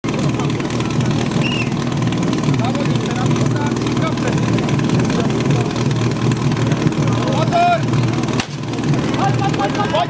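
Portable fire-sport motor pump engine running steadily under crowd voices and shouts, with a single sharp crack about eight and a half seconds in.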